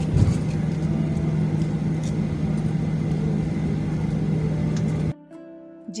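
Jet airliner cabin noise as the aircraft taxis after landing: a steady low engine hum under a rush of air, with a brief bump just after the start. It cuts off suddenly about five seconds in.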